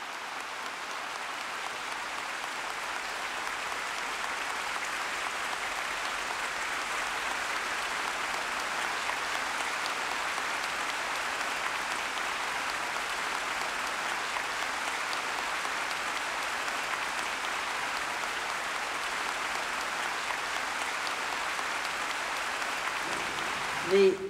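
Large audience applauding: sustained, even clapping from thousands of hands that swells over the first few seconds and then holds steady.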